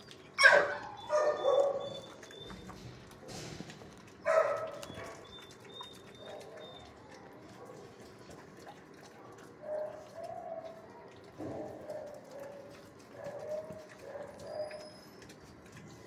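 Dog barking: a loud bark about half a second in, two more about a second later, another near four and a half seconds, then softer, shorter barks scattered through the last six seconds.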